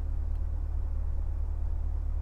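Steady low rumble of a car idling, heard from inside the cabin.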